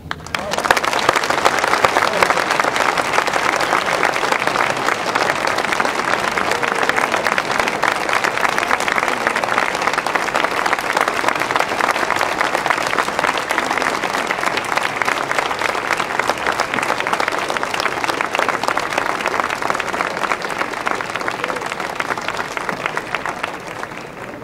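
Audience applauding steadily, beginning about half a second in and fading near the end.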